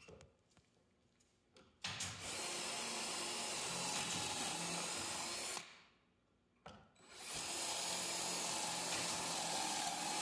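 Cordless drill boring pocket holes through plywood with a stepped bit in a pocket-hole jig: two steady drilling runs of about three and a half seconds each, the first starting about two seconds in, with a short pause between.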